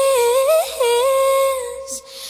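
A single voice humming a slow melody with no accompaniment: two long held notes with a short break between them, fading toward the end.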